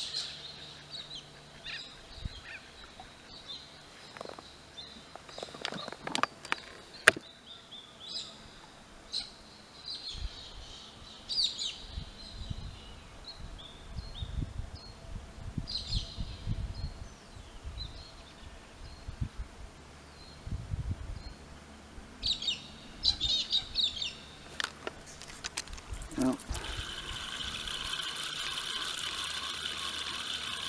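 Outdoor birds calling and chirping on and off. A sharp click sounds about seven seconds in, there are bursts of low rumbling through the middle, and a steady hiss sets in near the end.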